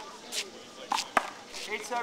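A few sharp smacks of a small rubber handball, the loudest about a second in, with a brief voice near the end.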